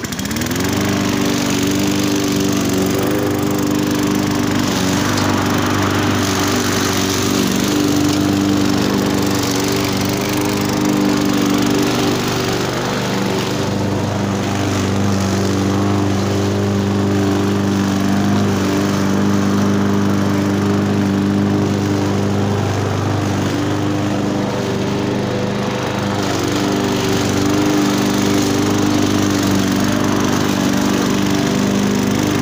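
Gasoline walk-behind push lawn mower's single-cylinder engine running steadily while cutting long grass, its pitch dipping slightly a couple of times.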